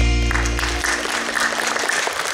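The song's final held chord rings out and stops within the first second. Audience applause breaks out about a third of a second in and carries on.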